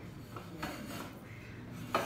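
A hand moving the chrome swivel nozzle of a World Dryer Model A hand dryer that is switched off: light metal rubbing and scraping, then a sharp click near the end.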